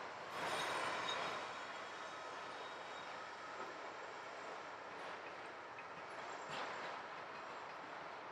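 Union Pacific freight train of autorack cars rolling past on a far track: a steady rumble and rattle of wheels on rail.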